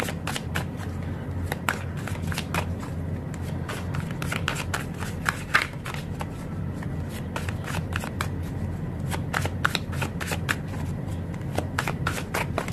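Tarot cards being shuffled by hand: a continuous stream of light, irregular card clicks over a low steady hum.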